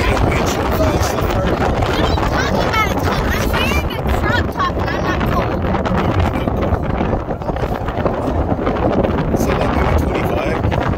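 Wind buffeting the microphone of a rider on a moving open golf cart: a loud, steady rumble, with high voices faintly heard through it a few seconds in.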